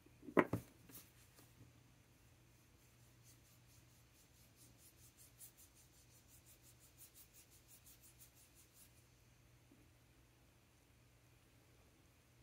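A paintbrush's metal ferrule clicking against the rim of a small glass ink sample vial, then a run of faint, quick brush strokes scratching across a paper swatch card for several seconds.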